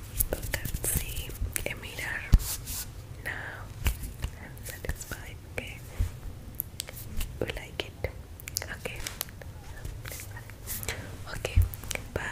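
Close-up whispering into a foam-covered microphone, broken by many sharp clicks and taps, ASMR-style.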